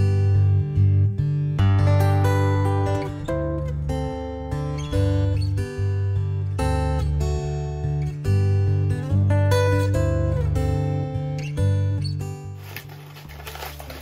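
Background music: a plucked acoustic guitar tune over held bass notes, starting abruptly and fading out near the end. As it fades, paper crinkles as the scrunched paper is pulled apart.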